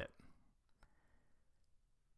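Near silence: quiet room tone with a few faint clicks, the clearest a little under a second in.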